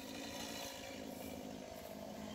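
Quiet, steady outdoor background noise with a faint low hum and no distinct event.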